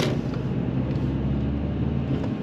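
Car engine and road noise heard from inside the cabin as the manual car drives slowly along, a steady low hum. A brief sharp click right at the start.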